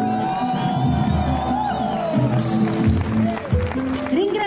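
Live Salento folk orchestra playing on stage: a long held high note slides up and down over the band for about two seconds, then the band carries on. Some crowd cheering is mixed in.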